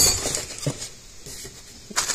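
Hands rummaging through the packaging of a light bar kit in a cardboard box: plastic bags rustling, with a few light clicks and clinks mostly in the first second, then quieter handling.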